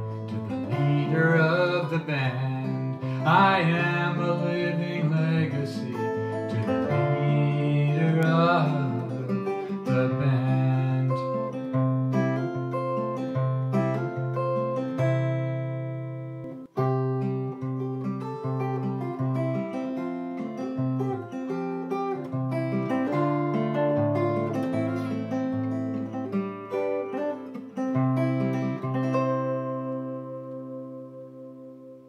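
Acoustic guitar played solo as a song's instrumental ending, picked notes and chords, with a wordless voice singing along over the first several seconds. The last chord is left to ring and die away at the end.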